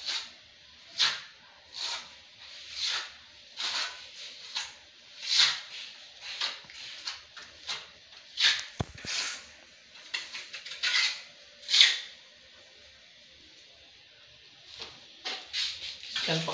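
Repeated short scrapes of a trowel spreading cement mortar on a wall above a row of tiles, about one stroke a second. The strokes stop about three-quarters of the way through.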